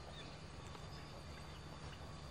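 Faint open-air background with a steady low hum, and light, irregular footsteps on paving as the camera operator walks.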